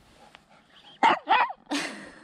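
A small dog, a miniature pinscher, barking: two quick high yaps about a second in, then a harsher bark near the end.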